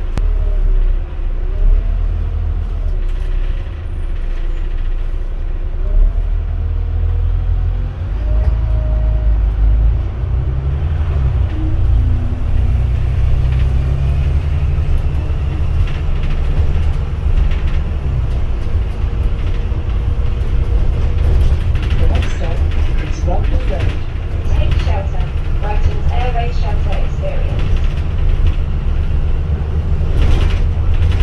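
Double-decker bus engine running as the bus drives, a heavy low drone heard from the upper deck, with a change in engine note about a third of the way in. Voices talk in the background in the second half.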